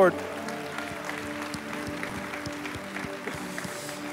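A congregation applauding, with soft held chords of background music underneath.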